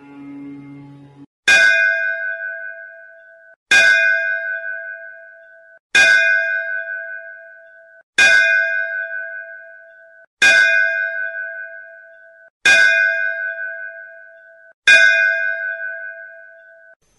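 A ringing bell struck seven times at a steady pace, about once every two seconds, each stroke fading and then cut short just before the next. A soft musical drone ends about a second in, just before the first strike.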